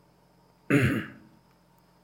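A man clearing his throat once: a single short, loud burst about two-thirds of a second in, lasting about half a second.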